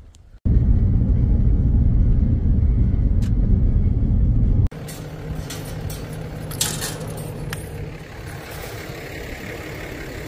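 A loud, low rumble that cuts off abruptly about halfway through. Then a pickup truck idles close by while the metal latch and chain of a steel farm gate clink a few times as the gate is worked open.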